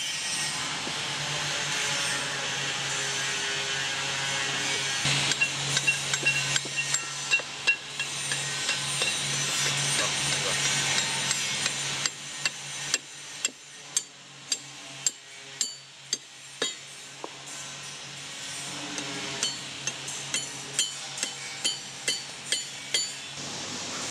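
Hammer blows on a copper drift, driving the gudgeon pin into the piston and connecting-rod bushing of a small power hammer. It is a run of sharp taps, about one or two a second, starting about five seconds in, with a short pause past the middle and more taps near the end.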